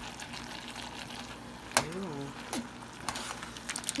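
A spoon stirring macaroni and cheese in a stainless steel pot: soft wet stirring with small taps and scrapes of the utensil against the pot, a sharper click about two seconds in, then a brief vocal sound.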